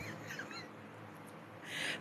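Quiet pause with an electric fan running steadily in the background. A few faint, high, squeaky chirps come at the start, and a breath is drawn in near the end.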